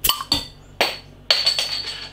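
Metal bottle opener prying the crown cap off a glass beer bottle: a few sharp clicks and clinks as it catches and levers the cap, then a hiss of about two thirds of a second as the pressurised gas escapes.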